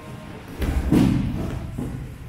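Body of a thrown aikido partner landing on the tatami mat in a breakfall: two heavy thuds close together, about half a second and a second in, the second the louder.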